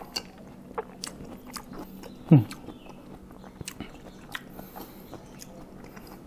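A person chewing a mouthful of cut fruit from rujak manis, with small wet clicks and smacks of the mouth, and a short hummed "hmm" of enjoyment about two seconds in.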